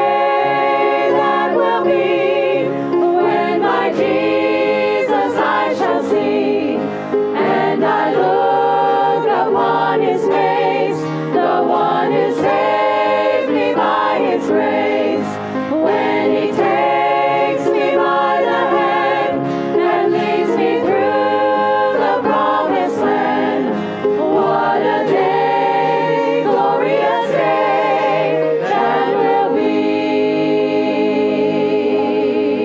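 A church congregation singing a gospel hymn together, many voices holding long notes.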